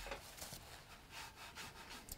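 Faint rubbing of a paintbrush on damp watercolour paper, as paint is blended in with short strokes.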